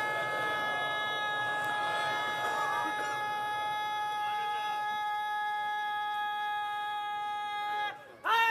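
Public-address microphone feedback: a steady high-pitched tone with overtones, held without wavering, then cut off suddenly near the end.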